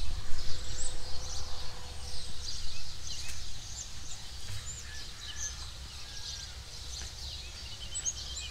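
Outdoor ambience: many short, high bird chirps over a steady low rumble of wind on the microphone, louder in the first few seconds.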